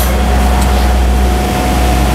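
Workshop machinery running: a steady low hum with a steady thin whine that sets in right at the start and holds.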